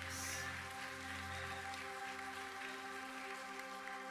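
Quiet worship-band music: a held chord, with a low bass tone that fades out about halfway through.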